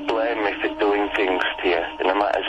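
Speech with the narrow, thin sound of a telephone line, as in a played-back phone message, over a faint steady hum.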